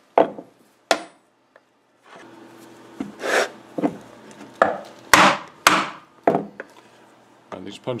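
Heavy mallet striking a slot punch, driving it through holster leather backed by a stone slab: a series of sharp knocks, two, then a pause of about two seconds, then about six more.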